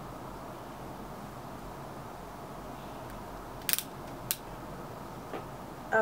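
Steady room hiss with no speech, broken by two short sharp clicks about half a second apart just past the middle.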